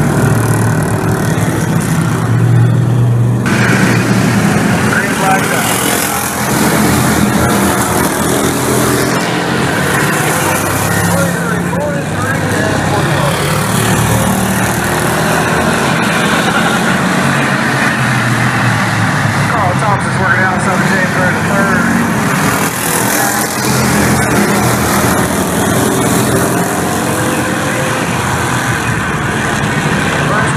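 Several Bomber-class stock cars racing on an oval track, their engines running loud throughout, the notes rising and falling as the cars circle the track. Voices are mixed in.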